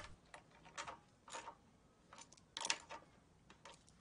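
Faint, irregular clicks, about half a dozen, as the air filter assembly's nuts are tightened onto their studs on a Honda GX200-type engine with a hand tool.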